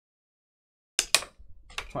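After a second of silence, two sharp plastic clicks, then a few quicker clicks near the end, from a rigid plastic card top loader being handled at the table.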